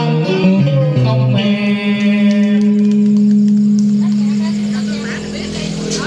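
Karaoke backing music ending a song: a few last melodic notes, then a final chord held for several seconds and slowly fading. Voices begin talking near the end.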